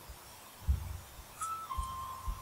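A thin, high whistle-like tone: a brief higher note about one and a half seconds in, then a slightly lower steady note held for about a second, over a few soft low bumps.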